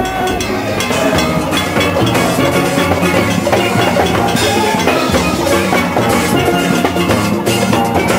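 A steelband playing: many steel pans ringing out melody and chords together over drum and percussion beats.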